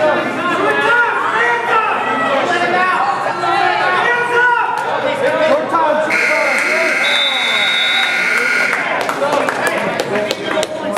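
Gym scoreboard buzzer sounding one steady tone for about three seconds, starting about six seconds in, as the match clock runs out. Spectators and coaches are talking and shouting throughout.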